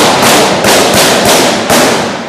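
Gunfire: a quick string of about six loud shots, a few per second, with a ringing echo that fades away after the last one.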